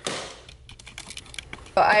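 A brief rustle, then a quick, irregular run of light clicks and clacks as small hard items are handled and set down.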